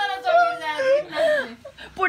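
A young man's high-pitched, whimpering laughter: long drawn-out squeals that slide down in pitch.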